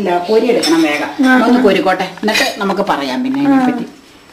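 A ladle clinking and scraping against an aluminium cooking pot while it stirs, with a few sharp clinks, under a woman's steady talking.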